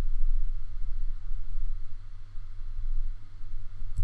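Steady low hum with a faint hiss underneath: the background noise of the recording, with no other sound.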